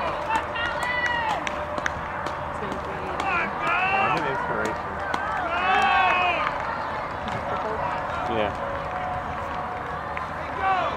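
Spectators' shouts of encouragement carrying across an open field, several drawn-out calls about a second in, around four and six seconds in and again near the end, over steady outdoor background noise.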